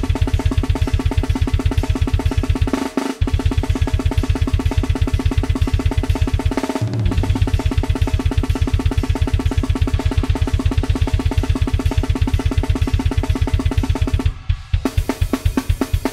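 Programmed Superior Drummer drum kit playing a fast grindcore beat at 250 bpm, with rapid even kick-drum and snare strokes. The kick drops out briefly about three and seven seconds in, and near the end there is a short break before a sparser pattern starts.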